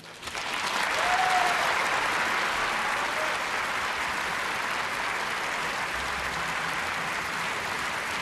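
Large concert-hall audience applauding, breaking out as the song ends, building over about the first second and then holding steady.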